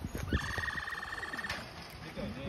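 Capybara calling: one high-pitched, rapidly pulsing tone held for about a second, like an electronic ray gun.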